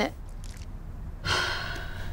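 A woman's single breathy sigh, starting about a second and a quarter in and fading within a second, over a faint low hum.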